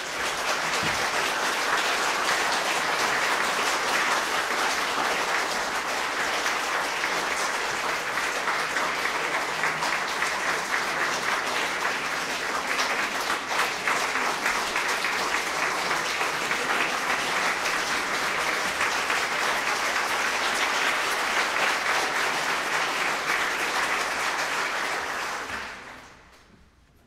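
Audience applauding steadily, starting all at once and fading out near the end.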